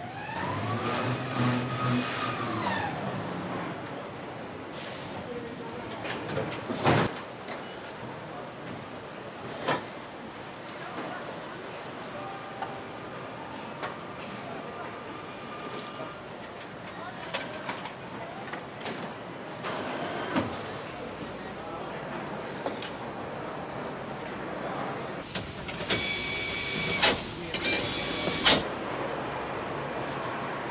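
Car assembly-line ambience: a steady machine background with scattered metallic clicks and knocks, and a motor whine that rises and falls in the first few seconds. A loud high-pitched electronic warning beep sounds in two bursts about four seconds before the end.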